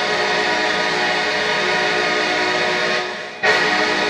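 Atlanta Falcons touchdown horn: one long, steady blast of several tones, held until about three seconds in, where it fades. A new loud sound cuts in just before the end.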